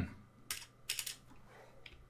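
Computer keyboard keystrokes: a few separate sharp taps, one about half a second in and a quick pair about a second in, with a faint one near the end.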